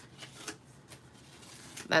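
Sticky notes being peeled off pieces of card stock and the paper handled: a few faint, brief paper rustles and ticks, mostly in the first half-second.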